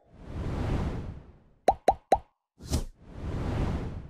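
Animated subscribe-button sound effects: a swelling whoosh, then three quick pops in a row about two seconds in, a short click, and a second whoosh.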